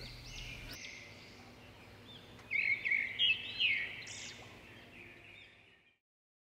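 Birds chirping in short, repeated calls, faint at first and brightest about midway, fading out just before the end.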